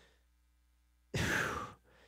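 Near silence, then about a second in a man's audible breath, a half-second rush of air with no voice in it.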